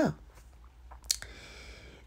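A quiet pause with a single sharp click about halfway through, followed by a faint steady hiss, over a low steady hum.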